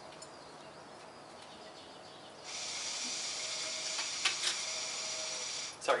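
Hookah being drawn on through its hose: a steady hiss of air pulled through the bowl and water base, starting sharply a little over two seconds in and stopping abruptly about three seconds later, with a couple of small clicks partway through.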